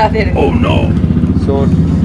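A man speaking over a steady low drone.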